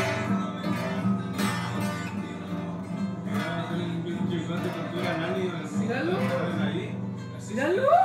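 Acoustic guitar strumming over music with a steady low note, and a voice coming in over the last couple of seconds.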